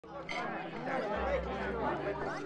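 Overlapping chatter of several people talking at once around a dinner table, with no clear words.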